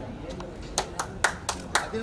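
A few people clapping by hand, a run of sharp claps about four a second that starts just under a second in.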